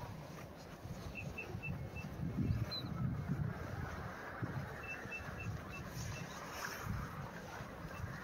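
A bird calling in two short runs of evenly spaced high pips, about four a second, over a low gusty rumble of wind on the microphone.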